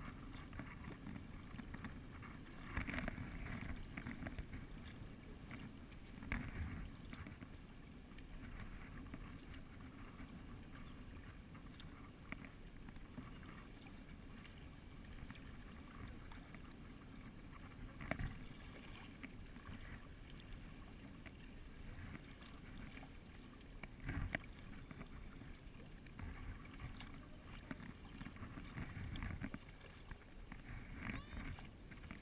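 Kayak paddling on a moving river: steady water noise along the hull, with now and then a louder splash of a paddle stroke.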